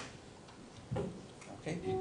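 A pause in a man's narration with a couple of faint clicks, one right at the start and another about a second in. He says 'Okay' near the end.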